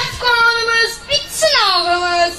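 A child singing two long drawn-out notes, the second sliding down in pitch near the end.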